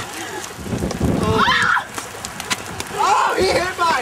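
Excited shouting voices of young people, with no clear words, during a scrambling outdoor game. A low rumble of noise comes up about half a second in, and a couple of sharp clicks sound near the middle.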